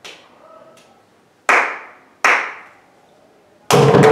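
Two sharp hand claps about three-quarters of a second apart, after a few faint taps, counting in the tala. Near the end two mridangams break in together, playing a fast, dense rhythm.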